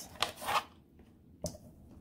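Brief tabletop handling noises from a small glass spray bottle and a funnel being moved: a short rubbing scrape, then a single light click about a second and a half in.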